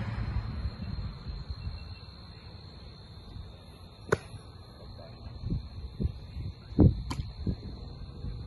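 A baseball thrown in pitching practice smacks into a leather glove with a sharp pop about four seconds in, and a second sharp pop comes about three seconds later. Low thumps sound in between, the loudest just before the second pop.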